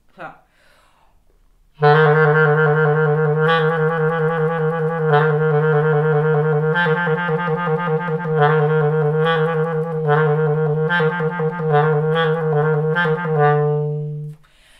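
Clarinet in its low register playing a fast little-finger exercise, rapidly alternating between neighbouring low notes in repeated phrases, starting about two seconds in and ending on a held low note.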